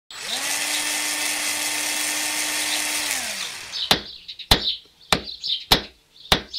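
An electric power tool spins up, runs steadily with a whine for about three seconds, then winds down. Then four sharp hammer-like blows follow, a little over half a second apart.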